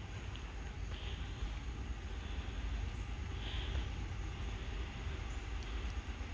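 Distant Norfolk Southern freight train with GE diesel locomotives approaching: a low, steady rumble that slowly grows louder.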